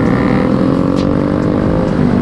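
Yamaha RX-King's two-stroke single-cylinder engine running under way through a racing exhaust, its pitch easing gently down. A short click comes about a second in.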